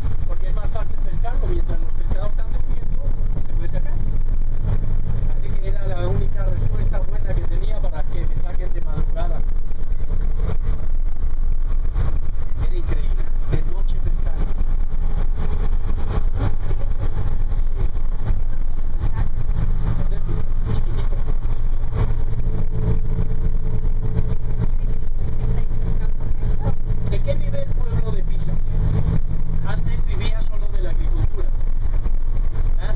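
A bus engine and road noise, heard from inside the passenger cabin as a steady low drone; its note strengthens and shifts about two-thirds of the way through. Faint voices murmur underneath.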